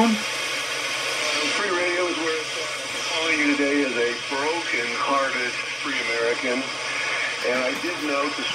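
AM broadcast radio on 560 kHz heard through the SDR receiver's audio, over steady static hiss. A talk station's voice comes up out of the noise about two seconds in as the loop antenna is retuned and the signal strengthens.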